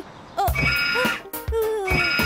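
Cartoon soundtrack music with steady electronic tones and a few short sharp hits, starting about half a second in, under a brief child-like "Oh".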